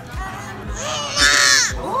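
A baby's loud, high-pitched squeal, peaking about a second in and breaking off shortly before the end, over background music with a steady beat.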